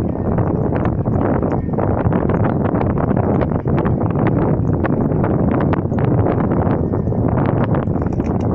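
Wind buffeting the microphone of a handheld camera, a loud steady rumble, with many small irregular clicks and knocks over it.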